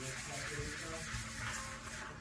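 Sponge scrubbing a soapy stainless steel sink, a steady wet rubbing of suds against the metal.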